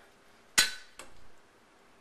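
A Chinese cleaver put down on a wooden chopping board: one sharp metal clank just over half a second in with a brief ring, then a lighter knock about a second in.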